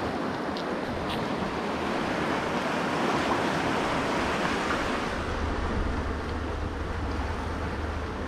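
Fast river water rushing steadily over rocks, the river running high with runoff. A low rumble joins past the middle.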